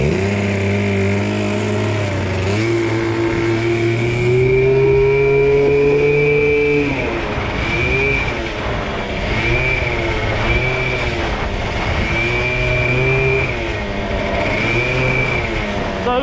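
Small engine of a motorized bicycle running under way. Its pitch climbs for the first few seconds as it accelerates, drops about seven seconds in, then rises and falls again and again as the throttle is worked.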